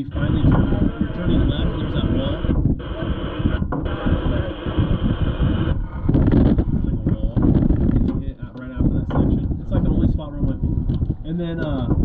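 Off-road race car's engine and running gear rumbling steadily inside the cab. A loud radio hiss fills the first six seconds, cutting out briefly twice, and indistinct muffled voices follow.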